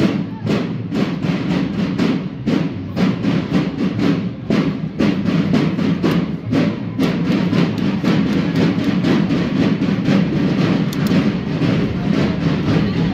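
Parade drums beating a steady marching rhythm, with sustained low tones running underneath.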